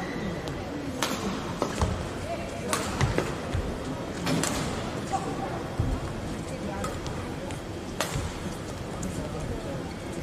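Badminton rally: sharp cracks of rackets hitting a shuttlecock about once a second at irregular intervals, with thuds of players' footwork on the court, over a background of crowd voices in a large hall.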